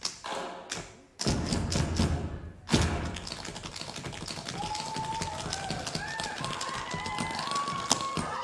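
Tap shoes striking a stage floor: a few taps over music with a heavy bass beat, a loud stamp about three seconds in, then a fast, continuous run of taps. High gliding tones join over the taps in the second half.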